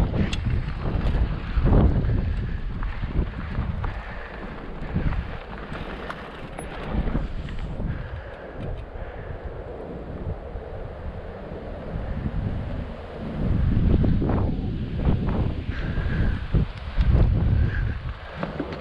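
Wind buffeting the microphone of a camera on a moving mountain bike, a gusty low rumble that swells and drops, loudest near the end.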